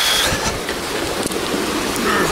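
Steady rush of seawater washing over wet sand at the edge of the surf.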